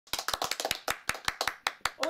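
Two people clapping their hands, a quick, slightly uneven run of about twenty claps that stops near the end.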